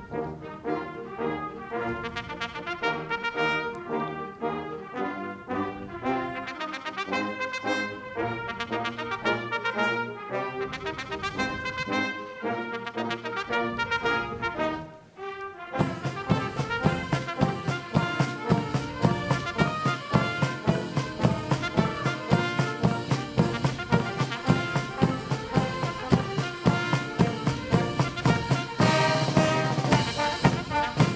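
Military brass band with trumpets and trombones playing a slow, solemn piece of held chords. About halfway through it breaks off briefly, and a louder, brisker passage with a steady beat follows.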